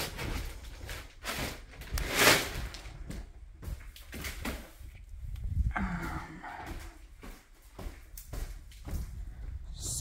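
Plastic drop sheeting rustling and footsteps as someone walks over the sheeting laid on carpet, with handling knocks. The loudest burst of rustling comes about two seconds in.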